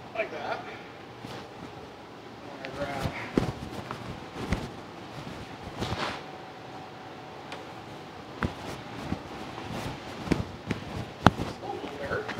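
Scattered metal knocks and clinks as a new disc brake rotor and hub is worked onto a truck's front spindle, with a faint steady hum coming in about halfway through.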